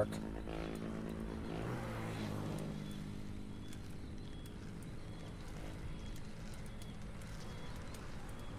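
A motor vehicle's engine drones steadily and fades away over the first two to three seconds, as it would when a vehicle passes and moves off. After that there is a steady low noise with faint short high chirps repeating at an even pace.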